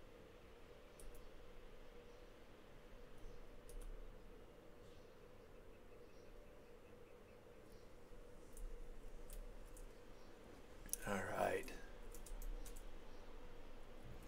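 Faint, scattered clicks from computer input while a sculpt is being edited, over a steady low hum. A short vocal sound from the person at the computer comes about eleven seconds in.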